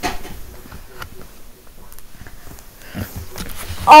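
Faint handling noise of a microphone being adjusted: a few small clicks, taps and a soft rustle.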